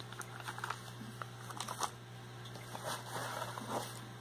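Crinkling and rustling as a plastic-wrapped rock and shredded paper box filler are handled, in several short clusters of small clicks and rustles over a steady low hum.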